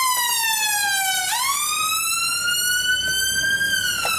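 Emergency vehicle siren wailing: a slow tone sliding down, then sweeping back up about a second in and climbing until near the end, where it starts falling again.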